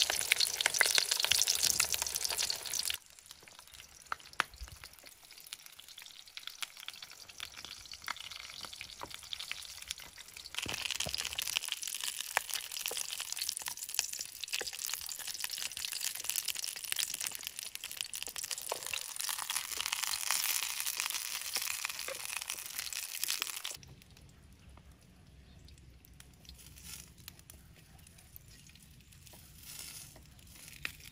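Whole eggplants sizzling in oil in a metal pan over a wood fire, with small ticks and scrapes as a wooden spatula turns them. The sizzle is loud at the start, dips, swells again through the middle, and drops to a faint background a few seconds before the end.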